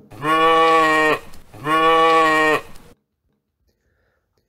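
A goat bleating twice, two long, steady calls of about a second each with a short gap between.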